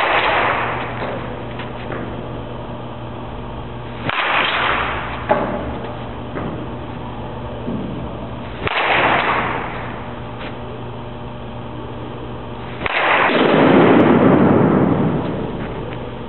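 Baseball bat hitting soft-tossed balls in a batting-cage drill: four hits about four seconds apart, each a sudden crack followed by a fading rush of noise, the last one the loudest and longest.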